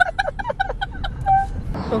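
A woman laughing in quick, rapid bursts inside a moving car, over the low rumble of the car. The laughing stops abruptly near the end.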